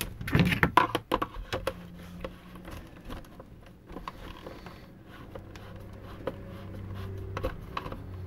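Hard plastic clicks and knocks as a vacuum's plastic cover is pushed into place, loudest in the first second or so. Then fainter scattered clicks as a screwdriver drives a screw into the plastic housing.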